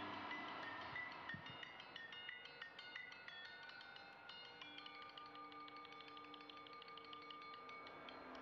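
Faint tinkling chime-like tones: many small, bell-like notes start in quick, irregular succession and ring on, with a few longer held tones coming in from about halfway.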